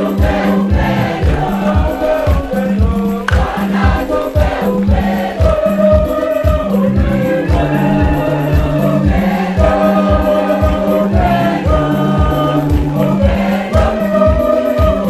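Choir and congregation singing an upbeat hymn over a steady beat and a sustained bass line that changes pitch a couple of times.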